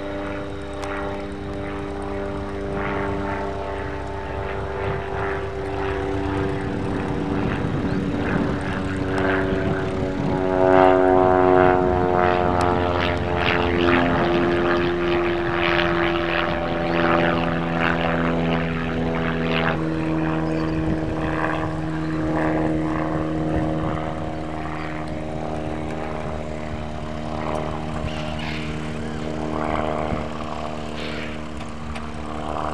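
Light propeller aircraft flying aerobatics overhead, its engine note rising and falling in pitch as it manoeuvres, loudest and dropping in pitch about ten to fifteen seconds in, then holding steadier.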